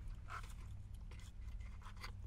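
Eating sounds: a few short, soft crunches and rustles of someone chewing waffle fries and handling a cardboard takeout box, over a steady low hum inside the car.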